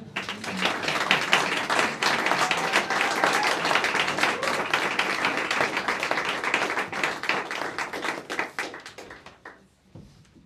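Small audience applauding at the end of a sung piece: many hands clapping, rising at once and thinning out until it dies away near the end.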